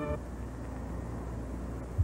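Steady low hiss with a faint low hum, the background noise of an old off-air videotape recording, with a short sharp click near the end.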